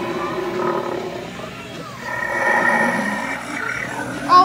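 Halloween animatronic ghoul prop playing a recorded monster growl-roar. It is loudest from about halfway in and lasts over a second.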